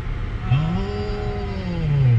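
A voice drawing out one long hummed or held sound from about half a second in, its pitch rising a little and then sinking, lasting nearly two seconds. Beneath it is the steady low rumble of the car's road and engine noise inside the cabin.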